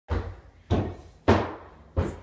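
Footsteps on a staircase: three heavy footfalls on the stair treads, evenly spaced about half a second apart, with a fourth starting at the very end.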